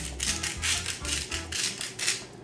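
Hand salt grinder being twisted over a dish of sliced potatoes, a quick run of gritty grinding strokes, about four or five a second.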